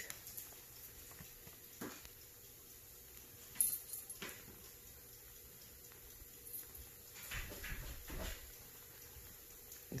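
Water-activated flameless ration heater pad reacting inside its sealed plastic bag: a faint hiss with a few scattered clicks and crackles as it heats up and the bag begins to fill with gas. A brief low rumble comes near the end.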